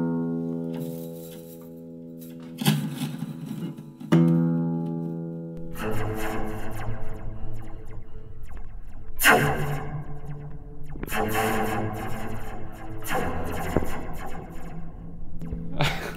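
Guitar chords strummed and left to ring three times, picked up through a contact microphone with a metal slinky taped to it. From about five seconds in, the ringing gives way to a scratchy, rattling noise with sharp bright crackles as the stretched slinky's coils are moved and rubbed.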